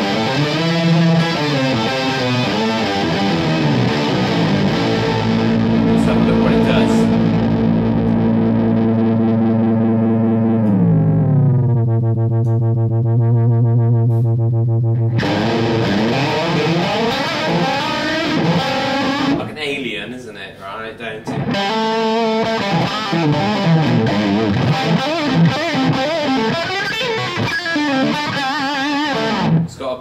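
Electric guitar played through an Earthquaker Devices Pitch Bay pitch-shifting pedal into an Orange amp, the pedal adding shifted voices above and below the played notes. A held chord slides down in pitch about halfway through, holds low and cuts off suddenly, then picked notes start again.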